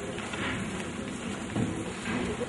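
Steady background noise of a large hall, an even hiss with faint indistinct voices and no clear event.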